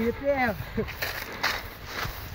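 A man's voice briefly, then rustling and footsteps of someone walking through tall dry grass and brush.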